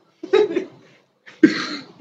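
Two short bursts of a person's voice, the first about a quarter second in and the second about a second and a half in.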